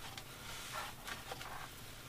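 Faint, soft scraping and rustling as a thin metal push rod is forced through the foam core of a paper-faced foamboard wing and exits the far side, over quiet room tone.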